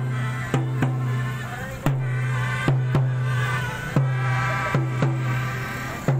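A group of melodicas (pianicas) playing a tune together in a reedy chorus, over a drum beat that repeats in a pattern of single and paired hits.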